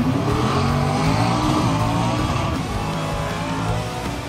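A car engine revving, its pitch climbing over the first second or two and then holding, with music underneath.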